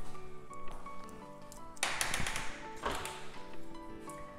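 Background music with held tones, and a brief tapping noise about halfway through.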